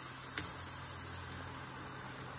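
Steady soft hiss of liquid nitrogen boiling off as it is poured from a metal pot into a metal bowl, around a burning storm match, with one faint tick near the start.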